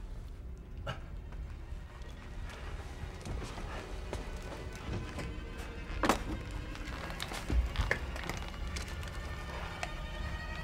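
Tense film underscore over a steady low rumble, with scattered sharp clicks and knocks; a sharp hit about six seconds in is the loudest, followed by low thuds about a second and a half later.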